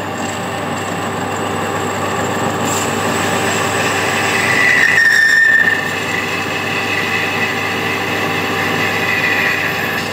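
Metal lathe running with a parting blade cutting a recess into a stainless steel bar: a steady cutting noise over the machine's hum, with a high squeal from the tool that swells to its loudest about five seconds in, then eases back.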